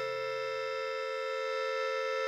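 A reedy keyboard instrument, in the manner of an organ or accordion, holding one sustained chord steadily.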